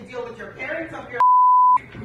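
A woman speaking, then a steady, loud censor beep of about half a second, a little past a second in, bleeping out a swear word.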